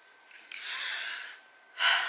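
A woman breathing between sentences: a soft, drawn-out breath, then a short, sharper intake of breath near the end.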